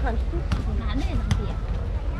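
Voices of passers-by talking as they walk past, over a steady low rumble, with two sharp knocks about half a second and just over a second in.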